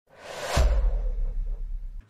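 Logo-sting sound effect for a Betano ident: a rising whoosh that lands on a deep boom about half a second in. The boom's low rumble holds on and then cuts off abruptly.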